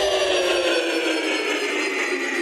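Intro sweep effect of a DJ remix: several slowly falling pitches over a hiss-like wash, with the deep bass dropping away about two-thirds of a second in.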